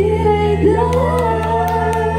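A live pop-rock band playing, with a sung vocal line gliding over sustained bass and keyboard chords and a few light cymbal or drum hits in the second half.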